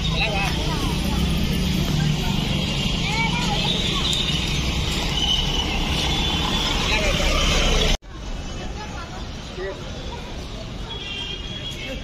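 Outdoor urban background: steady road traffic running with distant indistinct voices and chatter. About eight seconds in the sound drops abruptly to a quieter version of the same background.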